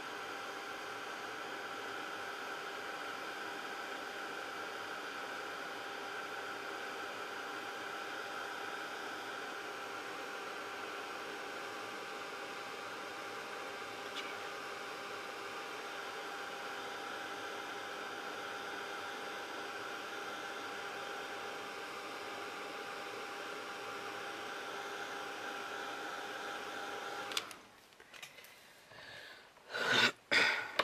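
Craft embossing heat tool blowing steadily, melting embossing powder on a stamped design, with a faint steady whine in its whir; it is switched off and cuts out suddenly near the end.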